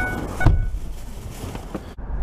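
A car door being pulled shut with a single loud thump about half a second in, just after a brief electronic chime tone; then a quiet car cabin with a few small clicks.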